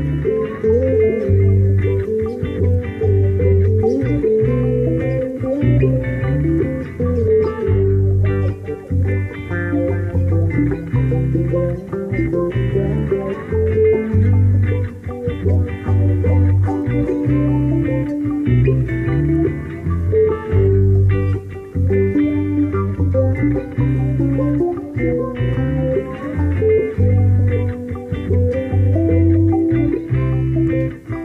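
A guitar played solo, a continuous run of picked notes over repeating low bass notes.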